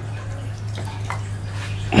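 Water dripping and trickling from a wet wire-mesh minnow trap into a jar of water as small fish are slid in, over a steady low hum.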